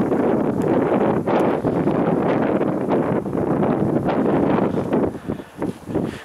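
Wind buffeting the microphone outdoors, a steady rumbling noise that eases briefly near the end.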